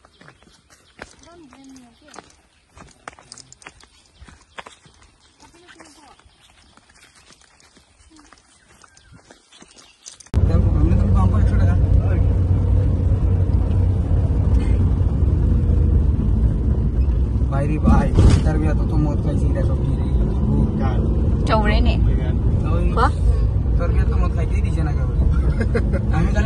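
Faint outdoor sounds, then about ten seconds in a sudden start of a loud, steady low rumble of road and engine noise inside a moving car's cabin.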